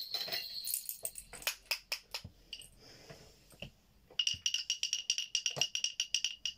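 Toy percussion instruments played by hand: a wooden clacker gives sharp clicks and rattles, then from about four seconds in bells are shaken in a quick, even ringing rhythm.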